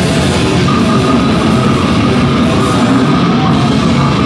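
Live metal band playing loud and without a break: distorted electric guitars and bass over a drum kit.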